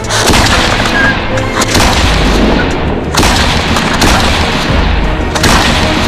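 Small black-powder cannons firing in turn, touched off by linstock. The nearest gun goes off at the start, and three more shots follow over the next five and a half seconds, the second one lighter. Each shot leaves a long rumbling tail.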